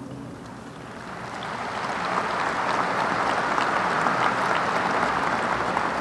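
Audience applauding. The clapping swells over the first two seconds, then holds steady.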